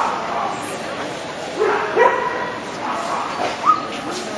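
A dog giving a few short yips and barks, the loudest about two seconds in and a sharp one near the end, with people talking in the background.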